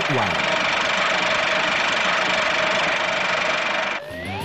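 The last word of a spoken announcement, then a steady hissing drone with a faint held tone underneath. It cuts off suddenly at the end.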